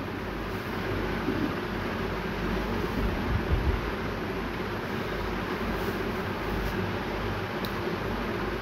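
Steady hiss and bubbling of a large pot of vegetables and masala simmering with water just added, with one short click near the end.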